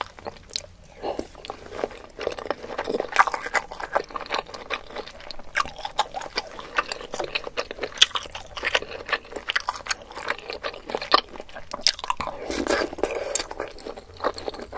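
Close-miked eating: biting and chewing a spicy meatball in thick sauce, a dense run of wet clicks, smacks and squishes from the mouth.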